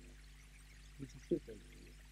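A pause in a man's speech at a microphone: a faint, steady low hum, with a few brief, quiet voice sounds about a second in.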